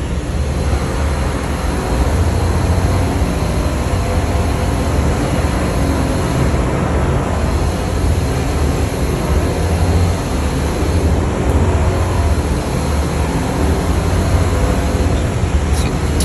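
Steady background drone: a strong low hum under an even rushing noise, with no distinct events.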